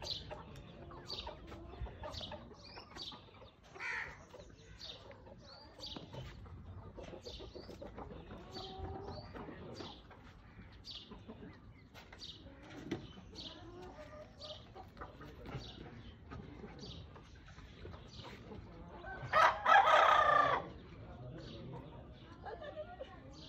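Chickens clucking with short calls scattered throughout, and a rooster crowing loudly for about a second near the end.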